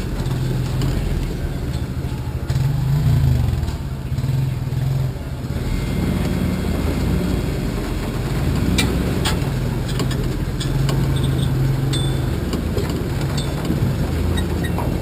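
A Chevrolet S10 Blazer's engine running at low revs as the truck crawls up a rutted dirt trail, with small rises in revs and scattered knocks and rattles from the body.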